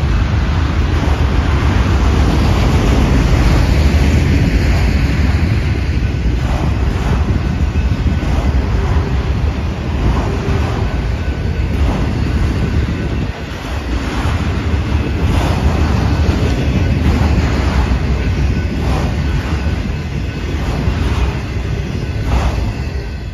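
Freight train of autorack cars rolling past, a steady loud rumble of steel wheels on rail with irregular clacks as the wheels pass.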